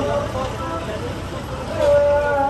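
A single chanting voice holds long, slowly wavering notes, with a lull between phrases and a new held note coming in strongly near the end, over a low rumble.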